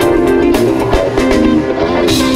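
Live jazz-fusion band playing: electric guitar and electric bass lines over a drum kit, with regular drum and cymbal strikes.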